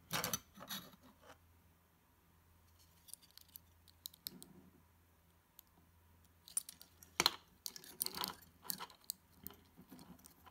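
Small clicks and knocks of plastic and metal parts being handled as a 3D printer extruder assembly and its circuit board are fitted together: a cluster of clicks at the start, a few scattered taps in the middle, and a busier run of clicks and knocks in the last few seconds, the loudest about seven seconds in.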